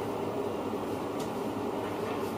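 Steady low hum and rumble of background noise in a small eatery, with a couple of faint ticks about a second in.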